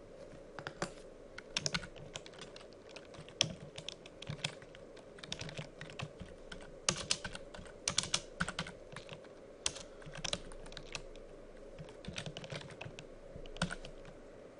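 Typing on a computer keyboard: irregular keystrokes coming in quick clusters with short pauses between them.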